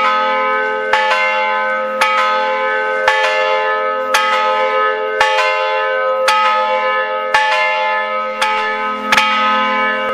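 A church bell tolling steadily, about one stroke a second, each stroke ringing on into the next.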